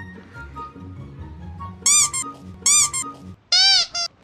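Light background music with three loud comic squeak sound effects about a second apart, each a short squeal that rises and falls in pitch; the third is lower and a little longer.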